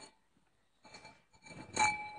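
A single light clink of a translucent porcelain lamp being handled, near the end, leaving a short clear ring. Before it, only faint handling noise.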